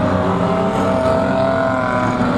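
Engines of several banger-racing vans running hard together, a steady mix of engine notes.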